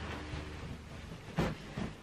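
Bedding being handled on a bed: a duvet and pillows rustling, with a soft thump about one and a half seconds in and another just after. A faint low hum sits under the first half.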